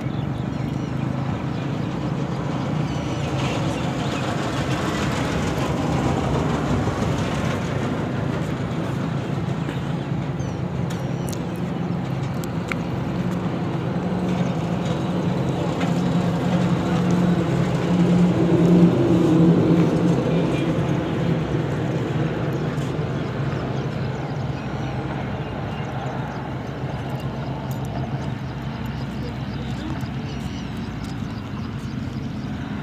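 A motor vehicle engine running with a steady low hum. It grows louder a little past the middle and then eases off.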